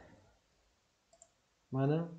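Man's voice talking, broken by a quiet pause holding one brief faint click about a second in, likely a computer mouse click.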